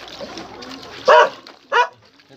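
A dog barking twice: about a second in, then again near the end.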